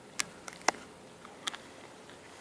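A few faint, sharp mouth and finger clicks as a wild rose hip is nibbled and picked clean at the lips, the sharpest a little over halfway through the first second.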